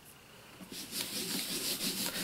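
A hand rubbing and sliding across cardstock on the work surface: a soft papery rustle that starts a little under a second in and carries on steadily.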